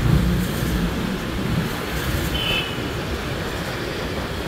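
Steady low rumble of road traffic and vehicle noise while moving along a city street. A brief high-pitched tone sounds about two and a half seconds in.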